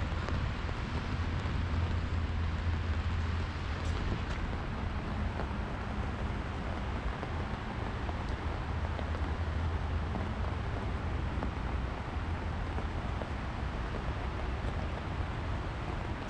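Steady rushing noise of the rain-swollen LA River flowing through its concrete flood channel, mixed with a low traffic rumble from a road bridge.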